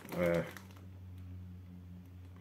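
A short spoken hesitation sound, then a faint steady low hum with light clicking and rustling as a hand rummages in a cloth tote bag and pulls out a snack packet.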